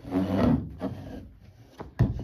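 A cloth rubbing and bumping against an upholstered dining chair with a wooden frame as it is wiped down. There is a loud rubbing scuff in the first half-second, then a few lighter knocks and a sharp one right at the end.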